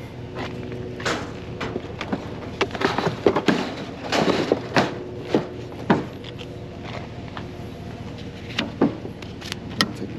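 Metal-tube frame of a folding football toss game knocking and rattling as it is handled and set down on a wooden trailer deck, a run of sharp clanks in the first half and a few more near the end, over a steady low hum.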